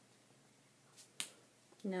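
Two short, sharp clicks about a second in, the second much louder, from hands handling paper pieces on a scrapbook layout.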